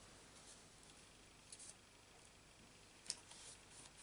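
Near silence, with a few faint rustles of a paper mask being laid and pressed onto cardstock: a soft rustle about a second and a half in, and a short tick and rustle about three seconds in.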